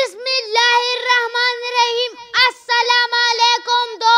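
A young boy declaiming loudly into a microphone in a high voice, holding each phrase on a level, chant-like pitch, in short phrases with brief breaks between them.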